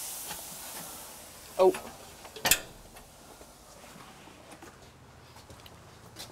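Steam hissing in a hot wood-fired brick bread oven, put in to give the loaves a crust, fading away over the first second or so. About two and a half seconds in there is a single sharp knock.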